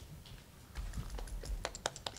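Handling noise at the microphone: a low thump about a second in, then a run of small irregular clicks and taps that grow busier toward the end.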